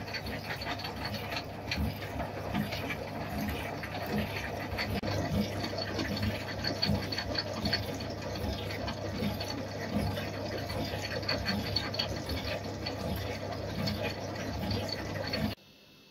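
Metal shaper running and planing steel angle iron, its ram stroking back and forth with a regular beat about every three-quarters of a second over a steady motor hum. The sound stops abruptly shortly before the end.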